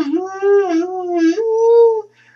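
A dog howling in one long, loud, drawn-out note that wavers and dips in pitch, then steps up and holds higher before stopping.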